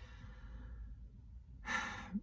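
A woman's short, breathy intake of breath near the end, taken in a pause in her talk before she speaks again, over a faint low hum.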